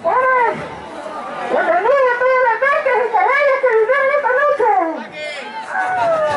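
A man wailing in a high falsetto, mock weeping: a short cry at the start, then a long wavering wail in several swells that breaks off about five seconds in.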